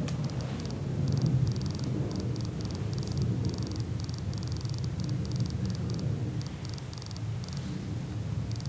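A steady low hum with a high-pitched chirping that comes in short bursts, two or three a second.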